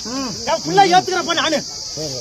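Several men's voices calling out over one another in a crowd, over a steady high-pitched chirring of insects.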